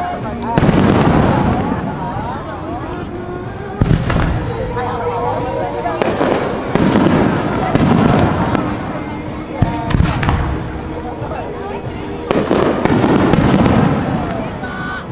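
Aerial firework shells bursting overhead, a sharp boom every two to three seconds, each one trailing off over a second or two.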